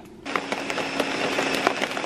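Countertop blender running at speed, churning chopped apple, cucumber and celery into green juice: a dense churning noise over a steady motor hum. It starts abruptly just after the start and stops near the end.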